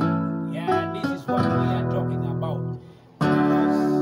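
Chords played on an electronic keyboard, each held and ringing. A new chord comes in about a second and a half in, and another after a brief dip about three seconds in.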